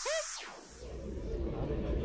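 As the electronic music ends, a short pitched sound rises and falls in the first half-second. A low steady rumble then starts, and a man's voice begins faintly near the end.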